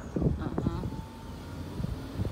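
Low, steady rumble of a car heard from inside its cabin, with a faint steady high tone joining about a second in.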